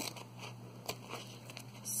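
Faint snips and small clicks of scissors cutting rhinestone mesh close along a flip-flop strap, with one sharper click about a second in.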